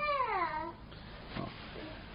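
A man's voice trailing off on a long, falling drawn-out syllable, then quiet room tone.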